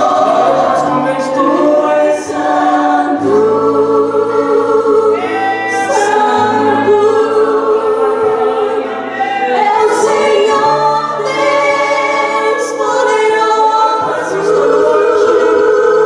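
A worship team of several women singing a slow gospel song together with band accompaniment: held, wavering sung notes over sustained low notes, with an occasional cymbal strike.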